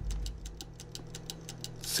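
Fast, light ticking, about seven ticks a second, like a clock sound effect, over a low steady hum.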